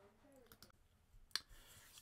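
Near silence with one sharp click a little past the middle and a few fainter ticks before it.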